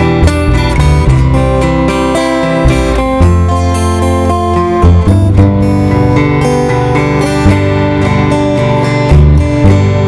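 Acoustic guitar strummed with a plucked upright double bass playing changing low notes underneath, an instrumental passage with no singing.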